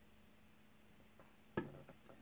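Near-quiet room tone with a faint steady hum, broken by one short sharp click about one and a half seconds in, followed by a couple of fainter ticks.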